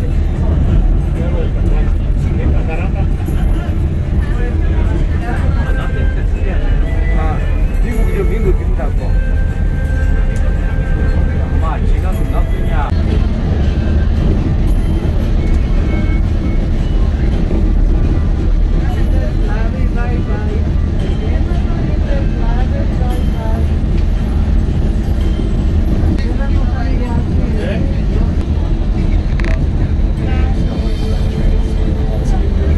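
Steady low rumble of a moving passenger train heard from inside the carriage, with passengers' voices over it.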